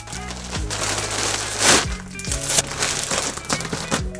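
Clear plastic bag and poly mailer crinkling and rustling as a bagged hoodie is packed into the mailer, loudest a little under two seconds in, over background music.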